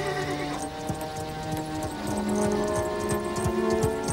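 A horse galloping, its hoofbeats starting about half a second in and growing louder and quicker as it approaches, over background music with sustained notes.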